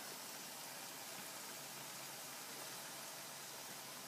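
Faint steady hiss of a gas stove burner turned down to a low flame.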